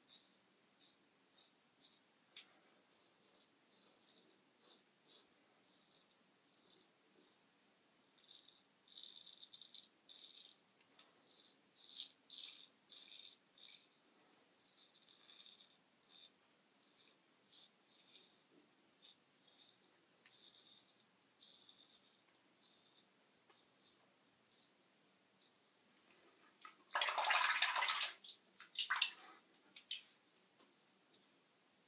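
Merkur Progress adjustable double-edge safety razor scraping through lathered stubble on the chin and neck: faint, short scratchy strokes, one or two a second. About three seconds before the end comes a louder rushing noise lasting about a second and a half, then a shorter one.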